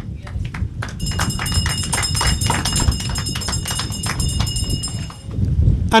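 Scattered hand clapping from a small audience, a dense run of separate claps lasting about four seconds, with a high ringing tone over it.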